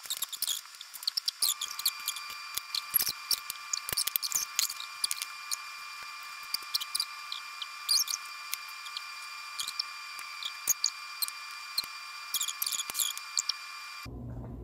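Close-up eating sounds: a fork clicking and scraping on a plate and many small sharp mouth clicks from chewing, scattered irregularly over a steady high hum.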